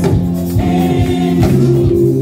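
Live gospel praise music: singing over a band with a steady beat, amplified through the hall's sound system.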